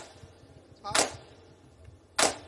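A single sharp crack about a second in, dying away quickly, one of a series of separate hits spaced about a second apart.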